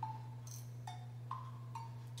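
Quiet instrumental stretch of a song's backing track between sung lines: five short, evenly spaced ticks, about two a second, over a low steady hum.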